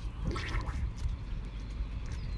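A man breathing hard, out of breath, with a short heavy exhale about half a second in. A steady low wind rumble sits on the phone's microphone underneath.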